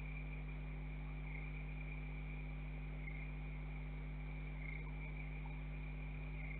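Crickets trilling steadily, one continuous high note that swells slightly every second or two, over a steady low hum.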